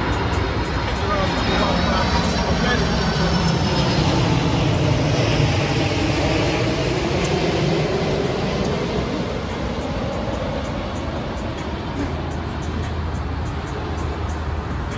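A passing engine: broad rumbling noise that swells to its loudest about five seconds in and then slowly fades.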